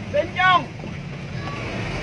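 Steady engine and road noise heard from inside a moving vehicle's cab on a wet road. A brief high-pitched voice comes about half a second in.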